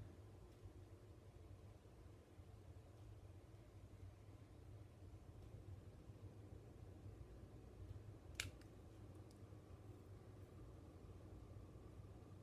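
Near silence: low room hum, broken by one short, sharp click about eight seconds in.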